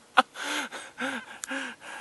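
A person's short, breathy, hushed sounds, about two a second, coming after a last sharp click near the start.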